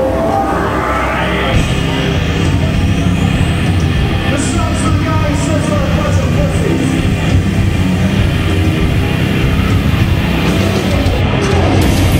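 Gothic metal band playing the opening of a song live, loud and steady, with drums, bass guitar and keyboards. A rising sweep runs through the first second or so.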